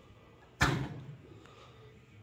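A single loud, sharp bang about half a second in, dying away over about half a second.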